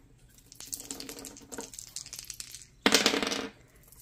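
Two small dice rattling together as they are shaken in the hand, then thrown onto a hard tabletop about three seconds in, clattering briefly before they settle.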